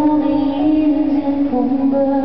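A woman singing live in long, held notes over piano accompaniment.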